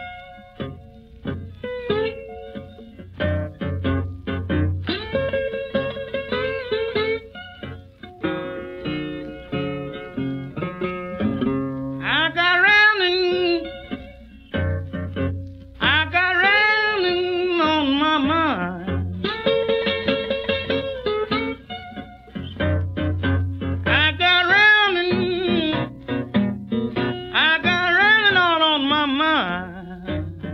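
Vintage acoustic blues recording that opens on solo acoustic guitar. From about twelve seconds in, a man sings long, bending phrases over the guitar.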